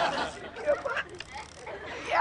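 Studio audience laughter dying away in the first moments, followed by a few indistinct voice fragments.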